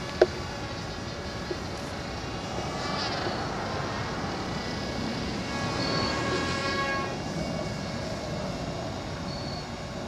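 Air Hogs AeroAce electric RC toy plane flying, the buzzing whine of its small electric motor and propeller shifting in pitch as it passes and growing loudest about six to seven seconds in. A sharp click sounds just after the start.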